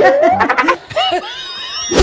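Laughter right after a punchline, loud at first, then a quieter, higher-pitched stretch in the second half.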